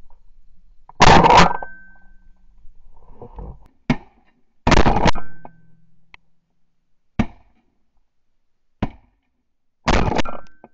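Shotgun shots: three loud reports, about a second in, near the middle and at the end, each leaving a short high ring. Three fainter, sharper reports fall between them.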